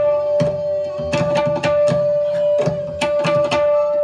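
Several tablas played together in Indian classical style, sharp strokes in quick runs with short pauses between them, over a steady held note.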